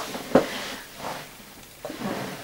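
Handling noises as a cat is picked up and held in someone's arms: a single short knock about a third of a second in, then faint soft rustling.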